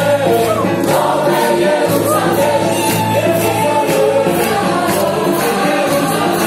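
Live band music with several voices singing together over a steady beat.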